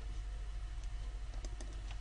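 A few faint, short clicks at a computer, over a steady low hum.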